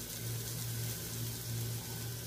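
Fried onion-and-coconut masala sizzling faintly in a hot aluminium kadai just after the gas flame is turned off, as a soft, even hiss over a steady low hum.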